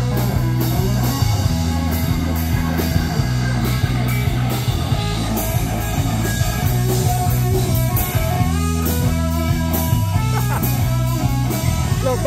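Live rock band playing electric guitar, bass guitar and drum kit through large stacked PA speakers, with a steady beat of cymbal strokes over sustained bass notes.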